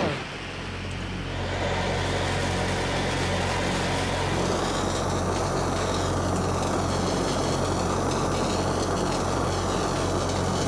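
Steady roaring hiss of an oxy-fuel cutting torch cutting through steel plate, with a low steady hum underneath. It builds over the first second or so, then holds level.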